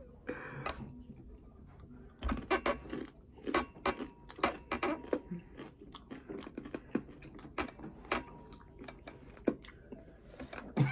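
Two people chewing the Paqui One Chip Challenge Carolina Reaper tortilla chip: a run of irregular crisp crunches starting about two seconds in and going on until near the end.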